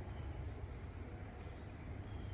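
Quiet background with a faint, steady low rumble and no distinct sound events.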